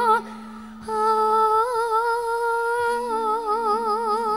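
Female campursari singer holding long sung notes into a microphone: one note ends just after the start, then after a short breath a new note is held steady and breaks into wide vibrato about three seconds in. Low held accompaniment notes sound underneath.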